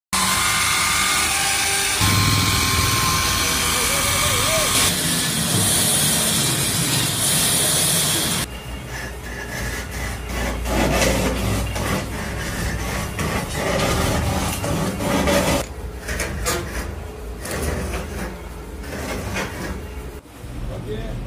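A corded electric chainsaw runs loud and cuts into a log for about the first eight seconds. Then a wood lathe turns a log while a cutting tool strips it down, giving an uneven scraping with many short knocks.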